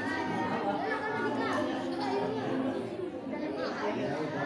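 Speech: several people talking at once in a room, a chatter of voices.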